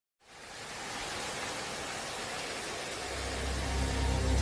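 Trailer sound design: a steady rushing noise fades in at the start and holds, and a deep low drone swells in about three seconds in.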